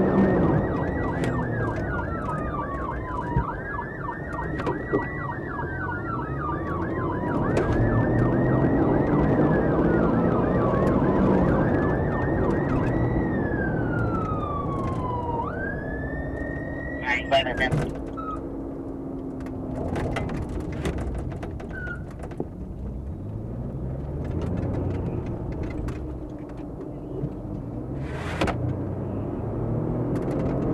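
Police car sirens wailing in long, slow rising and falling sweeps, with a faster warble running alongside. The sirens cut off about 17 seconds in. After that, patrol-car engine and road noise, with a few brief clicks.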